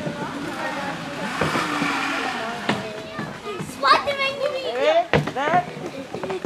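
Children's high-pitched excited shouts and calls, several voices overlapping, growing louder in the second half.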